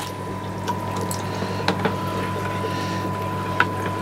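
Water running steadily through the overflow and drain plumbing of an aquarium rack on an auto water change system, with a few small clicks and a low, steady hum underneath.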